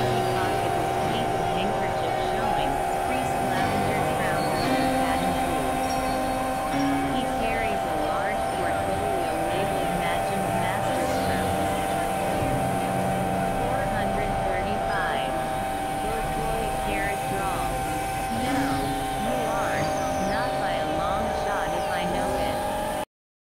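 Experimental electronic noise music: steady held synthesizer drone tones with many short warbling, gliding squiggles over them, and indistinct voices buried in the mix.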